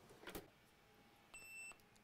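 A single short, high electronic beep about a second and a half in, faint, with a faint click shortly before it.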